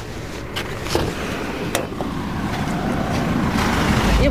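A van's sliding side door being worked by hand: a few sharp clicks and clunks from the handle and latch, then a rising rush of noise as the door slides open, over a steady vehicle rumble.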